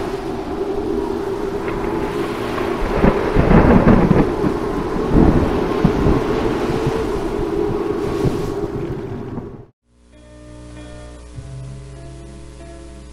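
Storm sound effect: a steady rushing rain-like noise over a sustained low musical drone, with thunder rumbling about three to five seconds in. It cuts off suddenly near the end, and soft music begins.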